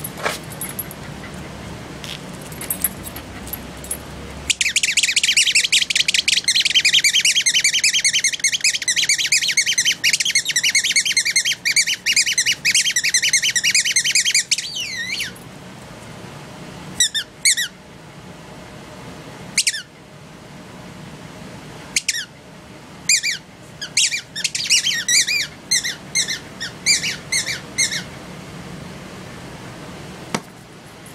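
A dog's squeaky toy being chewed. For about ten seconds it gives a fast, unbroken string of high squeaks, then scattered single squeaks further on.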